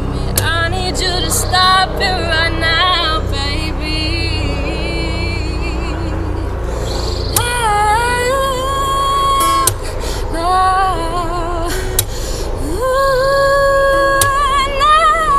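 A woman sings over acoustic guitar accompaniment. Her lines run in quick, wavering runs in the first few seconds, she sings further phrases in the middle, and near the end she slides up into a long held note.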